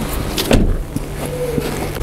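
A minivan's hinged front door being shut, a single thump about half a second in, with a steady low hum underneath.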